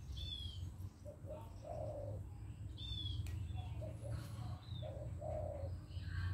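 Birds calling: a dove cooing in short low note groups, twice, and another bird giving a couple of sharp down-slurred whistles, over a steady low rumble.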